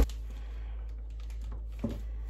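Quiet room tone with a steady low hum and a few faint, short clicks of light handling. A single spoken word near the end.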